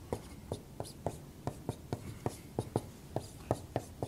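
Dry-erase marker writing on a whiteboard: a quick run of short taps and strokes, several a second, as letters and symbols are written.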